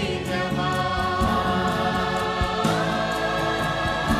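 Large mixed choir singing a Gujarati devotional-style song live, holding long sustained notes over a drum beat. About two-thirds of the way through, the voices move up to a new held note.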